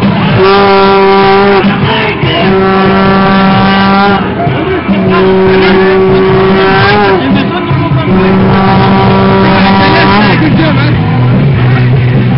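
A vehicle horn sounding four long, steady blasts of about two seconds each, with short gaps between, over crowd voices.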